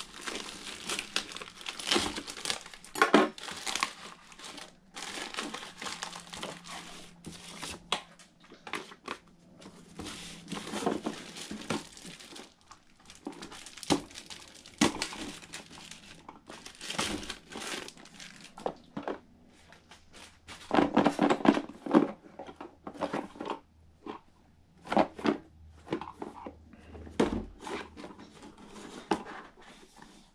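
Plastic packaging crinkling and rustling under the hands as a parcel is unwrapped, in irregular bursts with sharp crackles.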